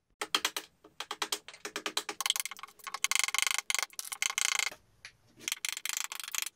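Rapid runs of sharp taps, many per second, with a lull about five seconds in: a mallet striking a chisel that is cutting into pine.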